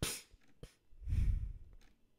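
A person sighing close to a microphone: a short breath at the start, then a louder, longer breath out about a second in that hits the mic with a low rumble. A small click comes between the two.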